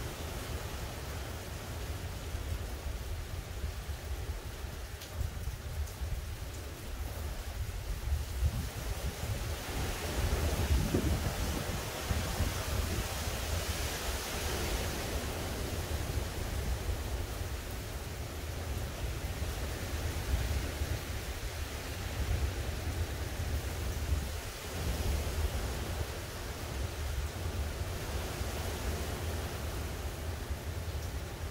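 Storm wind from Hurricane Ian blowing through trees, with a steady low rumble of wind buffeting the microphone. A stronger gust swells about ten seconds in and eases off a few seconds later.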